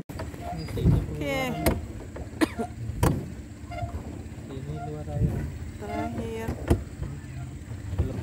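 Small boat moving on a lake: a steady low hum with a few sharp knocks, and faint voices now and then.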